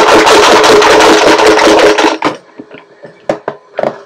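Numbered chips rattling in a cigar box shaken hard for about two seconds, followed by a few separate clicks of chips and box near the end.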